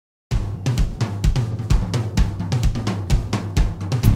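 Intro music: a drum kit playing a steady beat of kick, snare, hi-hat and cymbal, starting a moment in.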